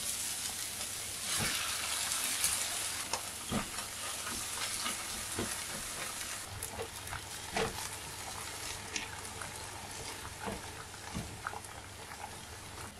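Diced onions and canned tomatoes sizzling in a nonstick frying pan while a silicone spatula stirs and scrapes them, with scattered light taps of the spatula on the pan. The sizzle is loudest for a couple of seconds about a second in. The tomatoes are being cooked down to drive off their excess water.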